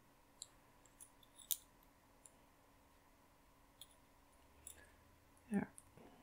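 Faint, scattered clicks of metal knitting needles and a crochet hook tapping together as stitches are worked off the needles, the sharpest about one and a half seconds in. A short voiced sound comes near the end.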